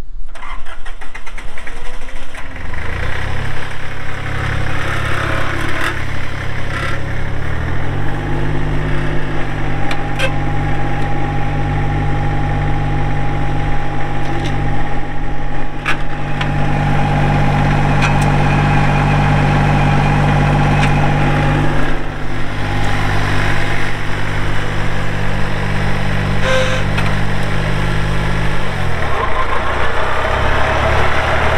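Massey Ferguson 1010's three-cylinder diesel engine starting up about two seconds in and idling. About eight seconds in it revs up and holds a higher speed, with a thin steady whine over it for much of the middle. It dips briefly, runs on, and drops back toward idle near the end.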